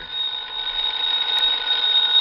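Telephone bell ringing in one continuous ring, used as a radio-drama sound effect.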